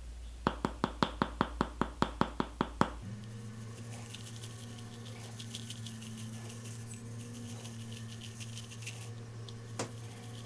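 About a dozen light taps, roughly five a second, as a bamboo toothbrush is tapped against a small jar of charcoal tooth powder. After about three seconds the taps stop and faint scratchy strokes of teeth being brushed follow, with one more click near the end.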